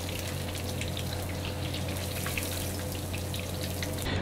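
Deep-frying oil in a wok bubbling and sizzling around pieces of marinated chicken, with many small pops over a steady low hum.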